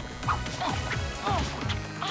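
Cartoon sound effects over background score music: crash and knock effects with a few short pitched blips.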